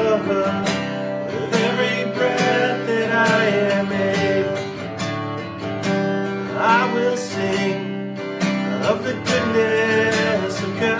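Acoustic guitar strummed steadily in an even rhythm, chords ringing on between strokes. A man's voice sings softly now and then over it, without clear words.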